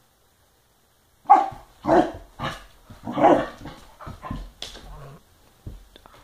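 Husky/Labrador-mix puppy barking: silence, then a run of about four loud barks from about a second in, followed by several softer, shorter barks.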